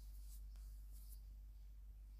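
Faint light rustles and scrapes of a plastic ruler being set against cotton macrame cord on a towel, over a steady low hum.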